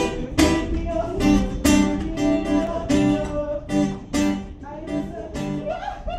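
Acoustic guitar strummed live, chords in a steady rhythm of about three strokes a second.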